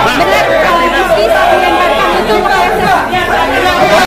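Several voices talking over one another in loud, continuous conversation, cut off abruptly at the end.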